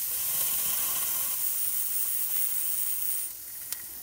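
Steam and condensate hissing out of an open drain cock on a steam pump's steam chest, clearing water from the chest before the pump is started. The hiss stops abruptly about three seconds in as the cock is shut, followed by a small click.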